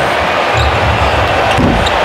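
Arena sound during live NBA play: a steady crowd-and-court din, with a basketball being dribbled on the hardwood.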